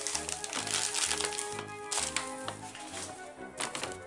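Background music with a repeating bass line, with light rustling and tapping of a paper shopping bag being rummaged through.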